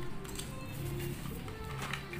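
Soft background music, a melody of held notes.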